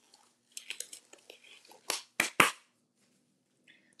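Gloved hands rustling and handling things, with a patter of light clicks about half a second in, then three sharp clicks close together about two seconds in.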